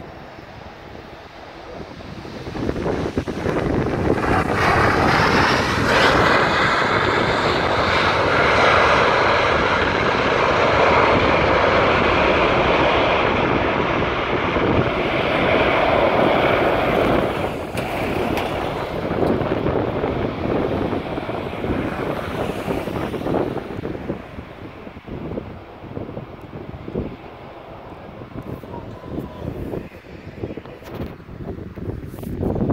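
Boeing 737 jet airliner landing: its CFM56 turbofan engines swell to a loud roar about two seconds after touchdown, typical of reverse thrust on the landing roll. The roar holds for about fifteen seconds with a steady whine in it, then dies away as the engines spool down.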